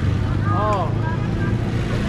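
Street traffic, mostly motorbike engines, as a steady low rumble, with a person's voice calling out a drawn-out rising-and-falling exclamation about half a second in.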